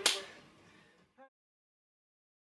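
A single sharp crack with a short room echo fading over about half a second, then a brief faint blip, after which the sound cuts off to dead silence.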